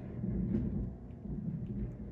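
Muffled sweeping and bumping on a hardwood floor upstairs, heard through the ceiling as a low, uneven rumble with faint knocks.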